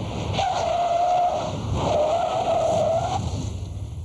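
A car's tyres squealing on the road surface under hard braking, in two long, slightly wavering stretches with a short break about one and a half seconds in, over tyre and road rumble.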